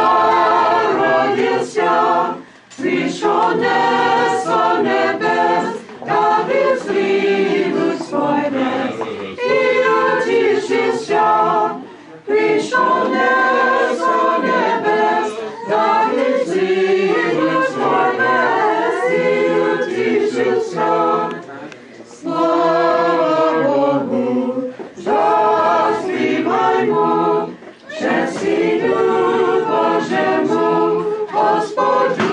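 Small mixed choir singing an Orthodox Christmas carol a cappella, in phrases of a few seconds with short breaks for breath between them.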